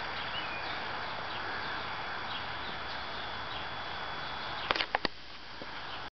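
Steady background hiss with a few faint, short, high chirps, then three sharp clicks close together about five seconds in.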